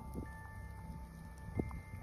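Faint chimes ringing: a few clear tones at different pitches come in one after another and hang on, over a low rumble, with a soft knock near the end.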